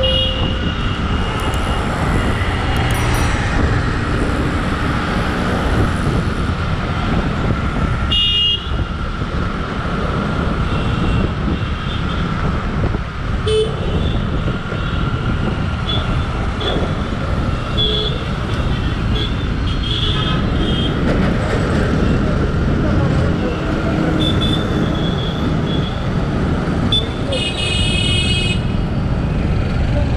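Steady rumble of road and traffic noise heard from a motorcycle riding through city traffic, with short vehicle horn toots several times and a longer honk near the end.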